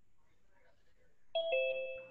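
Two-note descending electronic 'ding-dong' chime about a second and a half in, the second, lower note ringing on and fading: the kind of alert a Zoom meeting plays when a participant joins.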